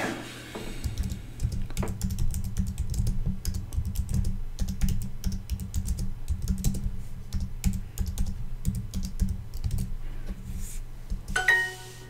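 Typing on a computer keyboard, with quick, irregular key clicks for about ten seconds. Near the end comes a short bright chime, the app's correct-answer sound.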